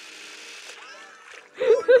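Cartoon water-splash sound effect, a steady hiss of splattering water that cuts off under a second in. A cartoon character's voice follows about a second and a half in and is the loudest sound.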